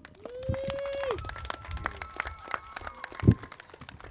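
Handheld microphone being passed from one speaker to another: rubbing and a run of small clicks from handling, with a loud thump about three quarters of the way through. A short laugh comes near the start.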